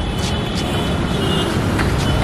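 Street traffic noise: a steady, dense wash of vehicles on a busy road.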